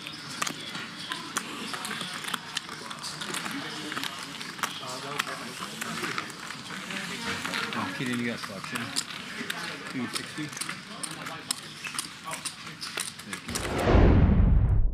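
Poker-table ambience: clay chips clicking as they are handled and stacked, under players' low table talk. Near the end a deep booming whoosh swells in, the logo transition sting.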